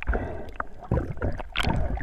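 Water gurgling and swishing around a GoPro HERO3 Black in its waterproof housing as it is moved underwater, with irregular knocks and bumps from handling.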